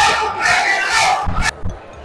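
Crowd of soccer fans shouting in a packed stadium concourse, many voices together. It cuts off suddenly about one and a half seconds in, leaving quieter voices.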